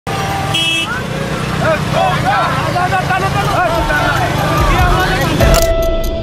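Street noise of an outdoor procession: many voices calling over one another above a low rumble of traffic, with a short horn toot about half a second in. A steady musical tone with regular ticking starts just before the end.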